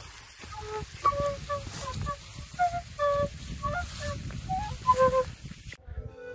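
A small hand-held flute played live in a string of short notes, a simple tune, over a rumbling noise underneath. The playing stops abruptly near the end.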